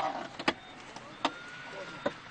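Three sharp metallic knocks of rescue tools on the seat frames inside an overturned bus, the first at the start, then about half a second and a second and a quarter in, over a thin whine that rises slightly in pitch in the second half.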